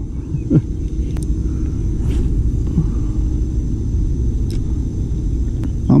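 Steady low outdoor rumble with no clear pattern, with a few faint ticks.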